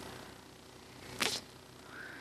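Quiet room tone broken by one short, breathy whoosh a little over a second in.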